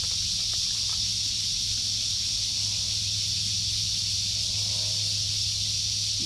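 A steady, high-pitched insect chorus, with a few faint clicks early on as a knife works at snail shells.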